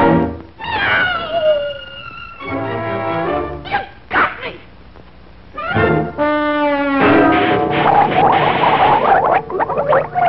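1940s cartoon orchestral score led by brass, with sliding, falling notes and animal cries. In the last few seconds it turns into a dense, noisy stretch.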